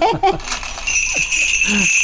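A Korean shaman's ritual bell cluster (mudang bangul), a bunch of small metal bells on a handle, shaken steadily so that it jingles continuously, starting about half a second in.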